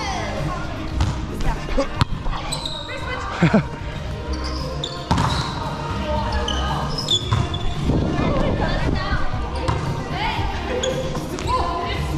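A volleyball rally in a reverberant gymnasium: the ball is struck with several sharp hits, shoes squeak on the hardwood court, and players' voices carry through the hall.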